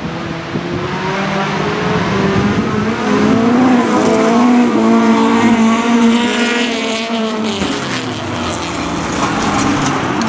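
Jokkis race cars' engines running hard on a gravel track, the pitch climbing and falling as cars rev through the corner and pass. Loudest in the middle.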